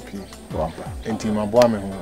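Speech over steady background music, with a couple of drawn-out, pitch-gliding vocal sounds.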